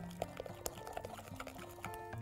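Soft background music with a gentle stepping melody, over faint wet stirring of chocolate cake batter with a spoon in a glass bowl.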